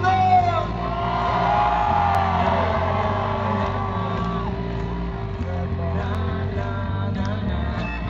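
Live rock band playing loud, with amplified electric guitar, bass and drums filling a large hall, and gliding high notes riding over the band in the first few seconds.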